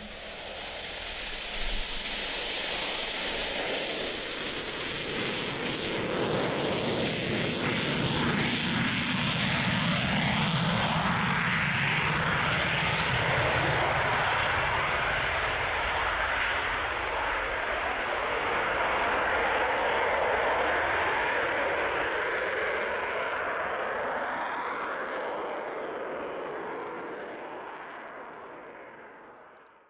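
Jet airplane engine noise: a steady rushing roar with slowly sweeping, phasing bands like an aircraft flying past. It fades out near the end.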